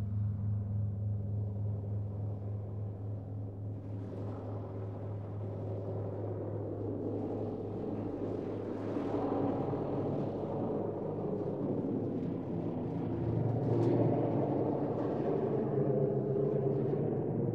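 Dark ambient drone made from an electronically processed gong: a deep, sustained rumble with many stacked overtones. Its upper overtones fill in from a few seconds in, and it swells brighter around the middle and again near the end.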